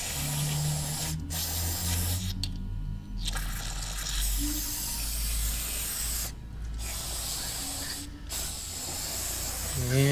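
Aerosol brake cleaner spraying through an extension straw in several hissing bursts with short breaks, flushing metal chips out of freshly re-threaded bolt holes in an LS cylinder head.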